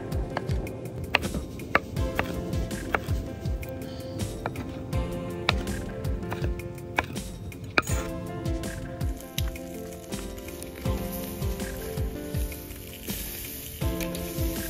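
Background music over a chef's knife chopping grilled bell peppers on a bamboo cutting board, the blade knocking sharply on the wood at irregular intervals.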